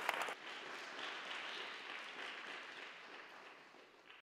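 Audience applauding. The sharp, distinct claps stop about a third of a second in, leaving an even, softer spread of clapping that slowly dies down.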